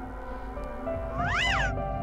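A single cat meow, rising then falling in pitch, about a second and a half in, over steady background music.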